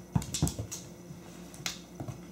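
A quick cluster of sharp taps and thumps on a hard floor in the first second, then a single click near the end, from a cat pouncing on and batting a small toy.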